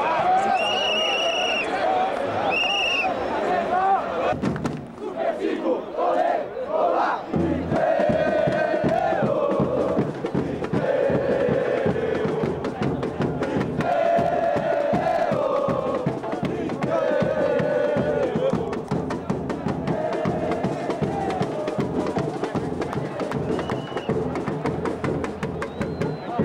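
Football supporters' section chanting in unison to a steady drum beat, the chant getting under way about seven seconds in. Two short, shrill whistle blasts sound right at the start.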